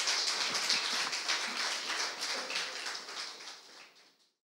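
Congregation applauding, a dense patter of many hands clapping that fades out near the end.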